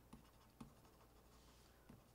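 Near silence, with faint scratching from a computer pointing device dragged across a surface as brush strokes are painted, and a light tick about half a second in.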